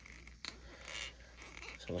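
Faint handling of small hard plastic toy parts: a light click about half a second in, then soft rubbing as a translucent plastic effect piece is worked onto a plug.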